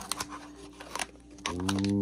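Brown paper packing wrap and a plastic bag crinkling and tearing as they are pulled open by hand, in a run of sharp crackles. About one and a half seconds in, a steady held musical tone comes in and is the loudest sound by the end.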